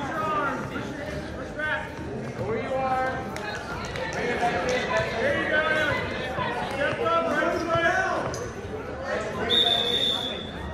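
Voices calling out over a wrestling bout in a gym hall. Near the end, a referee's whistle blows one steady blast about a second long, ending the period.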